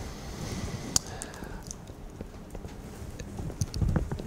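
Quiet lecture-room background hiss with a few light clicks and taps, the sharpest about a second in, as the lecturer handles things at the lectern between sentences.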